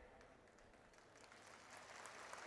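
Near silence, with only a faint hiss that grows slightly near the end.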